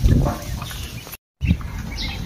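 A flock of week-old ducklings peeping faintly in short high chirps over a low rumble. The sound cuts out completely for a moment just past halfway.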